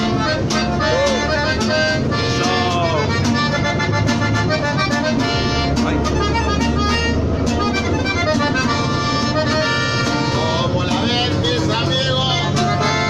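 Live norteño music: a button accordion playing a lively melody over a steady rhythmic accompaniment, with a low rumble underneath.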